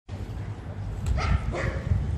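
Wind rumbling on the microphone, with two short high yelps close together just after a second in.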